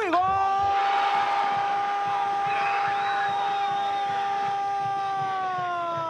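A football TV commentator's long goal cry: one shouted note held steady for about six seconds, sagging slightly in pitch as his breath runs out near the end.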